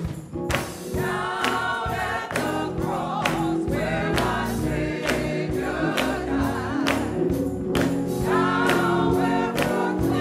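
Gospel choir singing in harmony over instrumental backing, with hand claps on the beat. The voices come in about a second in.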